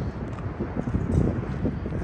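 Footsteps crunching on dirt and gravel, with wind rumbling on the phone's microphone.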